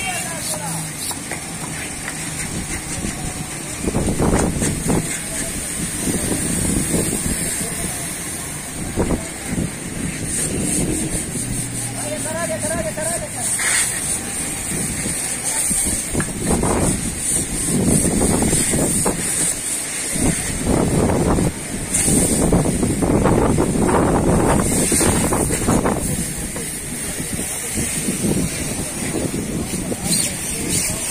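Car-wash yard sound: people talking over a steady high hiss of water spray, with louder, rougher stretches of noise in the second half.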